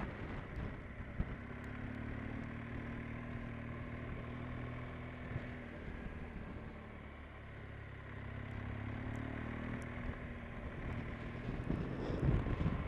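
Motorcycle engine running on the move, mixed with wind rushing past. The engine note eases off briefly around the middle and then picks up again.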